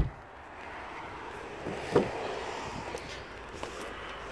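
Steady outdoor background noise, with one short bump about halfway through and a small click shortly after.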